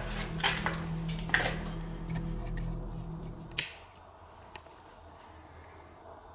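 A few small clicks over a low steady electrical hum as the lights are switched off. About three and a half seconds in, a sharp click and the hum cuts off, leaving a very quiet, still room tone.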